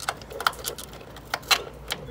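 Half a dozen small metallic clicks and taps as a braided stainless brake line and its black fitting are handled and fitted against the car's sheet-metal body.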